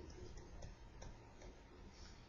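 Near silence with faint, irregular ticks of a stylus tapping on a pen tablet as words are handwritten.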